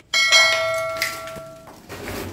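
A single bell-like metallic ring: struck once, with several clear ringing tones fading away over about a second and a half.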